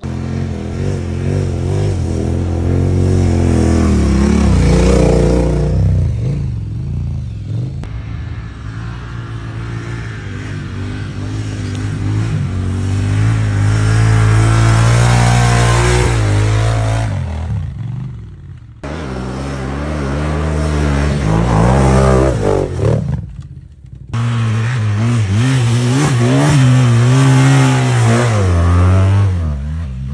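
Adventure motorcycle engines revving hard, their pitch rising and falling as the bikes climb loose sandy trails, in several passes joined by abrupt cuts, with the sound dropping out briefly twice in the second half.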